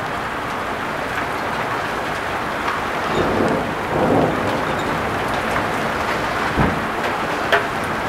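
Heavy thunderstorm rain pouring down in a steady hiss, swelling slightly a little after three and four seconds in.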